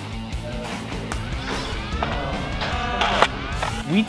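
Background music with a steady beat over a bass line, with rising glides building through the second half.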